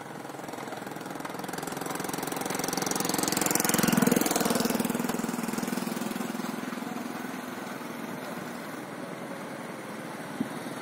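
A motor vehicle's engine passing close by: it grows louder to a peak about four seconds in, then fades away.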